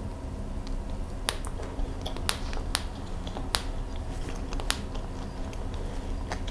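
Close-up chewing of a bite of baked mooncake, with about five sharp, wet mouth clicks spaced irregularly through the chewing.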